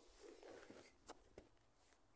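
Near silence, with a faint rustle and a few soft clicks.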